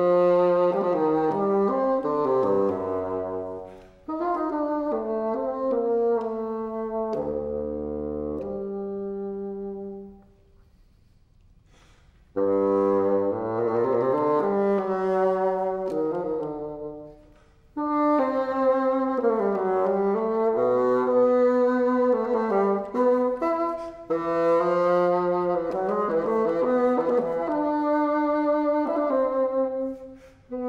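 Solo bassoon playing melodic phrases that reach down to low notes, broken by short breaths and by a rest of about two seconds a third of the way through.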